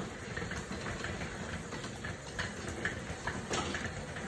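Elliptical cross trainer running as it is pedalled: a steady low whir from the flywheel and drive, with faint clicks from the moving linkages now and then.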